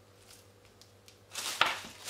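Quiet at first, then about a second and a half in a short rustle and crinkle with a sharp tick as a clear peel-and-stick adhesive sheet is handled and pulled.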